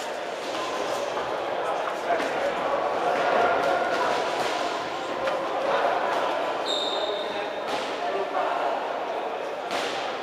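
Voices and calls echoing in a large sports hall, with dull thuds from two amateur boxers moving and punching in the ring.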